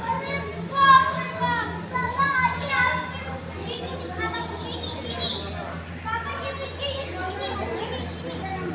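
Children's voices calling and chattering, high-pitched and loudest about a second in, over a steady low hum.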